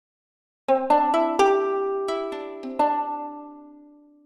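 Spitfire Audio LABS 'Moon Guitar' virtual instrument playing a short phrase of about seven plucked notes. The phrase starts a little under a second in, and the last notes ring out with heavy reverb, dying away slowly near the end.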